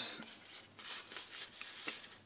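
Faint rustling and rubbing of sheets of 240-grit sandpaper handled in gloved hands, with a few soft scrapes of the paper.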